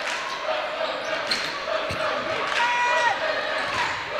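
Basketball game sounds on a hardwood gym floor: a ball bouncing and a sneaker squeak lasting about half a second past the middle, over steady crowd noise in a large, echoing gym.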